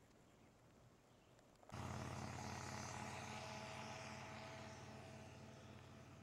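Near silence, then an engine's steady hum with a hiss over it starts abruptly a little under two seconds in and slowly fades.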